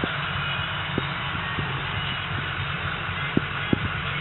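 Steady low vehicle rumble with hiss, and a few small clicks and knocks, two of them louder late on.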